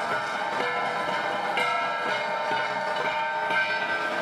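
An ensemble of flat bronze gongs (Cordillera gangsa) is being struck over and over. New strokes land about every half second to a second, and the metallic ringing tones overlap and carry on between them.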